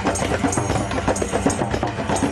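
Drumming music: many drums and percussion playing a fast, steady beat over sustained low notes.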